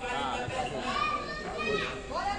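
Several high-pitched women's voices shouting and calling out at once, as players and onlookers call during a futsal game.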